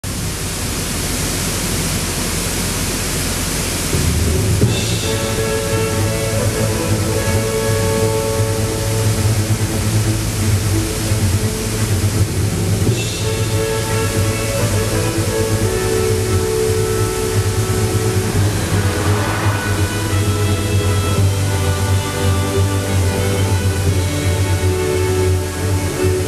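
Water rushing over a small waterfall, a steady even noise. About four seconds in, slow music with long held notes comes in over it.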